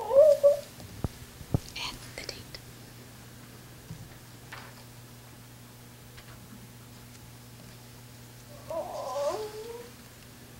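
A person's wordless, high wavering vocal cries: a short loud one at the start and a longer gliding one near the end. Two sharp knocks come between them about a second in, over a steady low electrical hum.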